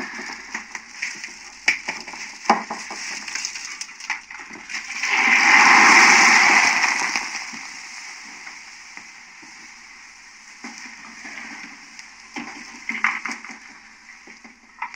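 Kitchen clatter: scattered knocks and clicks of pots, pans and utensils being handled. About five seconds in, a loud hissing rush lasts roughly two seconds, then fades back to the clatter.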